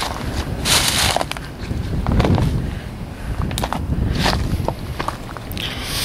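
Footsteps crunching irregularly through dry leaves and brush, over a low rumble of wind on the microphone.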